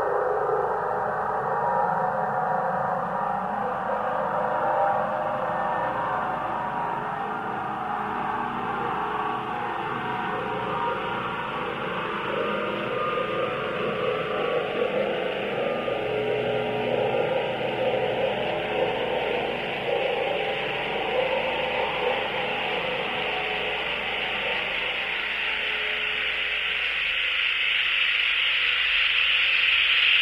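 Steady rushing noise with a slow sweep rising in pitch through it, growing brighter and hissier near the end.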